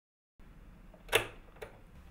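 Two mechanical clicks over a faint hiss: a sharp one about a second in and a fainter one half a second later.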